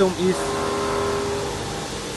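Steady motor whine from the CNC corner cleaning machine's servo-driven ball-screw linear axis. It holds one pitch for about a second and a half, then fades.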